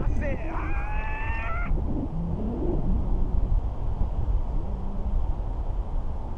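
Wind from the airflow of a paraglider in flight buffeting a camera microphone: a constant low rumble. Just after the start a person lets out one long, high-pitched cry lasting about a second and a half.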